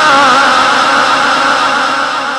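A man singing a line of religious verse through a loudspeaker system, his voice wavering up and down in ornaments. About half a second in the sung line ends and an echoing wash carries on, starting to fade near the end.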